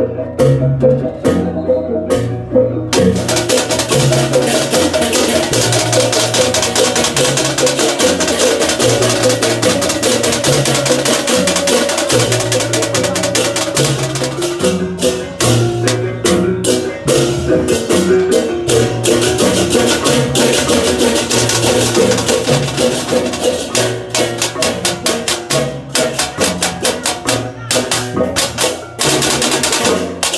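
Balinese processional gamelan (baleganjur) playing: a dense wash of crashing ceng-ceng cymbals over interlocking gong-chime figures and low gong strokes. The cymbal crashing thickens a few seconds in and breaks into separate strokes near the end.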